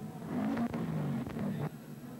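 Holden Commodore V8 touring car's engine running in the pit box, with a few sharp clanks from the pit crew's wheel-change work.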